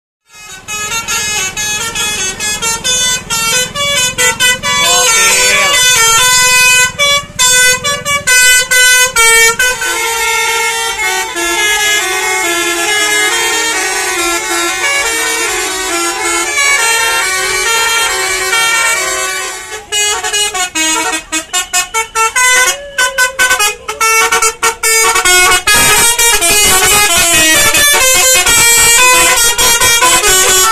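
Tour buses' multi-tone 'telolet' air horns playing quick melodic runs of notes, loud, with voices of a crowd mixed in.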